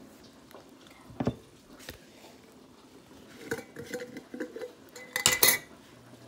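Kitchen dishes and utensils clinking and knocking: a single knock about a second in, a run of light clinks with a faint ring around the middle, and a louder clatter near the end.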